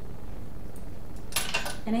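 A brief cluster of clinks from a ring of metal measuring spoons as a tablespoon of milk is measured over a small bowl, about one and a half seconds in, after a stretch of quiet room tone.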